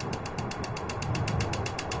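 Gas hob's electric spark igniter clicking rapidly and evenly, about twelve clicks a second, as the control knob is held turned; the burner has not yet lit.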